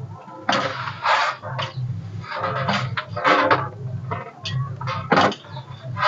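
Hands kneading wheat-flour dough in a brass plate, a run of irregular squishing and pressing strokes.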